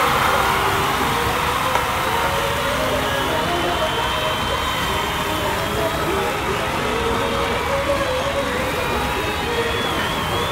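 Busy restaurant din: background voices and music over a steady hiss, with pork belly sizzling on a tabletop barbecue grill.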